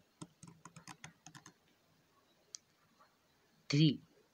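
Ballpoint pen writing on ruled paper close to the microphone: a quick run of short taps and scratches for about a second and a half, then a single tick.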